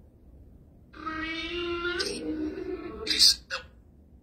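Necrophonic spirit-box app putting out a drawn-out, voice-like synthetic tone for about two seconds, its pitch shifting about halfway, followed near the end by two short sharp bursts of hiss.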